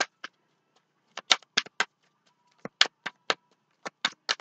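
Sharp clicks and taps of tarot cards being handled on a table: about ten short clicks in small clusters, with near silence between them.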